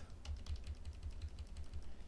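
Computer keyboard being typed on: a few scattered keystrokes as a line of code is finished and the cursor is moved, over a low steady hum.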